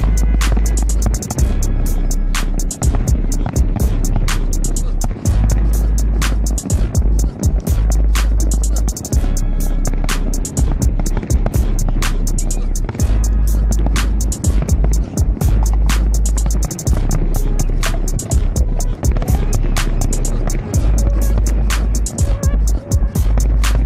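Fireworks going off in a continuous barrage: many sharp cracks and bangs, several a second, over a heavy, steady low rumble.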